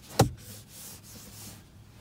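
A single sharp click from the sliding centre-console armrest of a 2020 Honda Civic as it is pushed into another position, followed by faint rubbing of a hand on the armrest.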